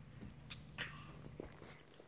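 A few faint, short pats of a crawling baby's hands on a tile floor, about half a second and just under a second in, with smaller sounds after.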